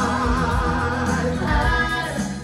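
A group of singers holding wavering sung notes over a full musical backing with bass and beat.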